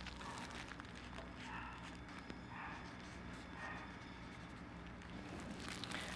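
Faint scratching of a felt-tip marker drawing on orange tissue paper, in a few soft strokes about a second apart, with light paper rustling.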